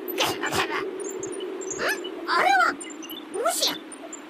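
High, squeaky puppet-character voice making short chirping calls whose pitch swoops up and down, two or three of them in the second half, over a steady low hum.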